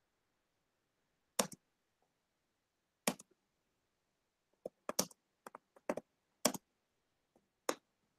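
Computer keys clicking on a video-call line: about ten sharp, irregular clicks, sparse at first and bunched together in the second half, with dead silence between them.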